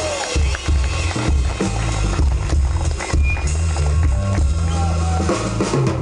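Live blues-rock band playing an instrumental groove, with drum kit and bass guitar to the fore.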